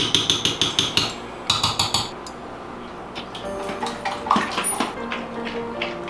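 A metal spoon rapidly tapped against the rim of a blender jar, about eight quick clinks a second in two short runs, knocking peanut butter off into the jar. Background music with held notes follows.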